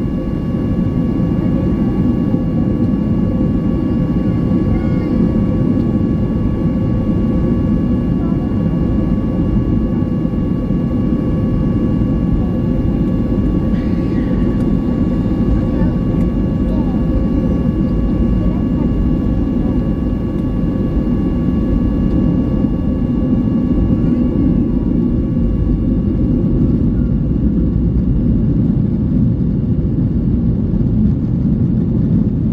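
Inside the cabin of a Boeing 737-800 taxiing: a steady low rumble of its CFM56-7B engines at taxi power and the rolling airframe, with a steady high whine from the engines on top.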